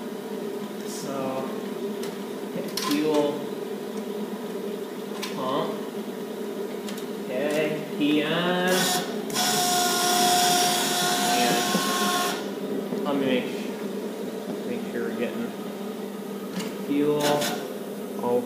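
An electric fuel pump whines steadily. A loud rushing noise with a steady tone cuts in for about three seconds in the middle.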